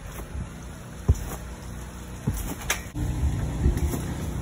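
Low rumble of wind and handling noise on a phone microphone as it is carried bouncing on a backyard trampoline, with a few sharp thumps, one about a second in and two more past the halfway point.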